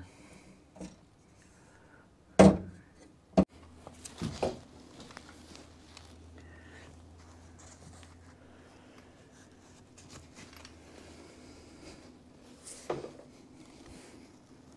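A few sharp knocks and clunks as the soft-top frame and parts are handled against the truck's cab roof, the loudest about two and a half seconds in, another a second later, a short cluster soon after and one more near the end, over a faint steady hum.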